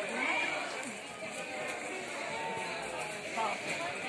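Crowd of many people shouting and talking at once, voices overlapping, with a few raised calls standing out.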